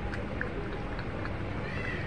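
A cat lapping milk from a plastic container, faint ticks about three a second, and a kitten giving one short high meow near the end.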